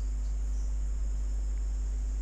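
Steady background noise with no events: a strong low hum and a thin, high-pitched steady hiss or whine.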